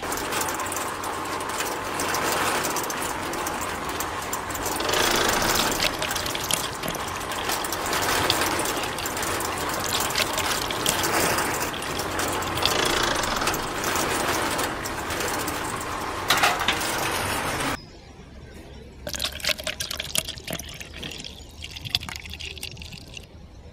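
Miniature concrete mixer's drum turning on its small electric motor and gear, with wet concrete churning and sliding out of the drum. About eighteen seconds in it drops suddenly to a quieter stretch of scattered soft clicks.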